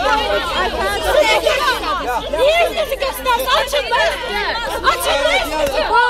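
A crowd of people shouting and talking over one another in a scuffle, many raised, high-pitched voices overlapping without a break.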